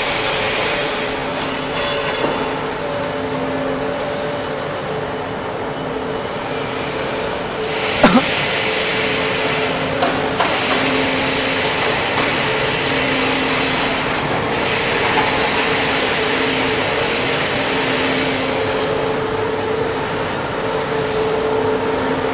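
Steady factory-floor machinery noise: a continuous hum and hiss with two low tones that pulse on and off every second or so, broken by a couple of sharp metallic clicks about eight and ten seconds in.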